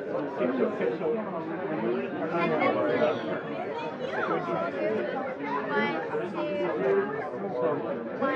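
Many people talking at once: steady overlapping chatter of a crowd, with no single voice standing out.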